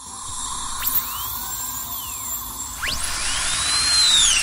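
Dentist's drill whining, growing louder as it goes, its pitch swooping up and down again and again.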